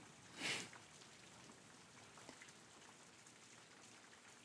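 Very faint rain sound bed, with one brief soft hiss about half a second in.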